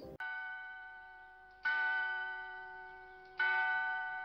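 A bell struck three times, about a second and a half apart. Each strike rings out with several steady tones and fades slowly before the next.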